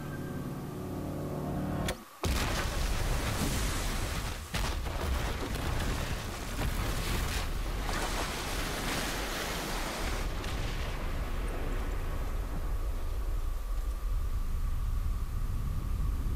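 TV drama soundtrack: a few held notes of score cut off abruptly about two seconds in, then a long, deep, steady roar of rumbling noise, like the rumble of a huge explosion or surge.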